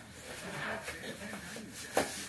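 Snug stretch fabric of a compression body-shaper shirt rustling and rubbing as it is pulled down over a person's head and arms, with faint low strained vocal sounds. A brief sharp click comes right at the end.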